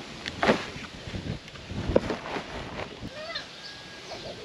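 Crisp rustling and a few crunches of an armful of freshly harvested kale leaves being handled and gathered, in irregular bursts, the loudest about half a second and two seconds in.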